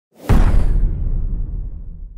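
Intro whoosh sound effect for an animated logo reveal: a sudden loud hit about a quarter second in, followed by a deep tail that slowly fades away.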